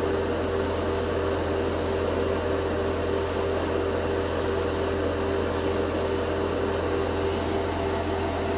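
Airbrush spraying in many short bursts of hiss, each under a second, laying extremely light coats of chrome paint, over the steady drone of the spray booth's fan.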